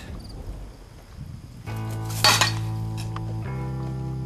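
A thrown metal dock pole lands with a short, loud metallic clank about two seconds in. Background music of held guitar chords comes in just before it and carries on to the end, changing chord once.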